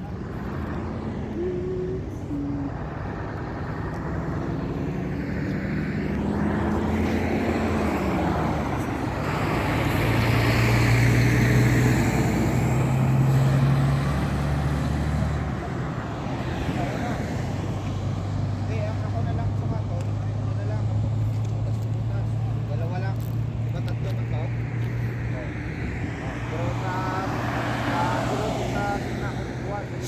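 Highway traffic: vehicle engines and tyre noise, swelling as a vehicle passes about a third of the way in, then a steady low engine hum.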